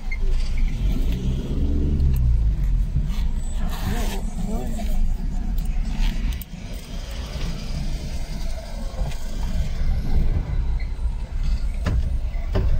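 Low rumble of a car's engine and tyres heard from inside the cabin as it moves slowly in a queue of traffic.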